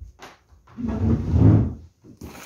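A cardboard box is slid across a wooden table, giving a scraping noise about a second long, with a few light knocks before it.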